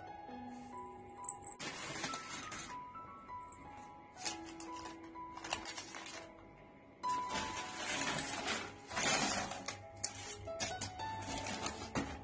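Soft background music of held notes, with several stretches of paper wrapper crinkling as a fast-food burger is unwrapped. The longest crinkling comes in the second half.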